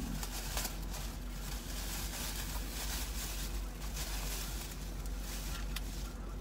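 Rustling and crinkling of a bag and plastic snack packaging being rummaged through and handled, a continuous run of small crackles over a low steady hum.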